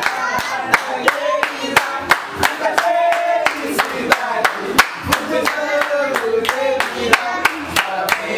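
A small group clapping hands in a steady rhythm, about three claps a second, with several voices singing along: a Brazilian birthday song.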